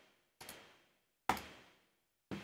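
Two clicks from operating the computer: a soft one about half a second in and a sharper one a little past a second, as the patch is run again.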